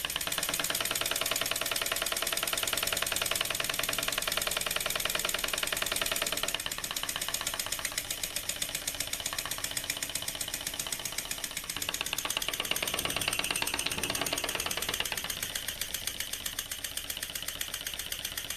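Small aluminium single-acting oscillating-cylinder model engine running fast on compressed air, a rapid even chuffing of exhaust puffs, one per turn, with air hiss. Its pace and level shift a few times, softer after about six seconds.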